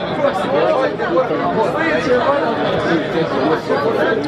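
A crowd of spectators chattering: many overlapping voices at once, with no single voice standing out.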